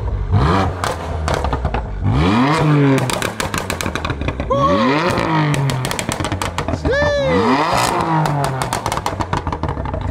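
BMW F80 M3's twin-turbo straight-six revved hard about four times while stationary. Each rev falls away into rapid pops and bangs from the exhaust, like gun shots: the aggressive overrun mapped into its new tune.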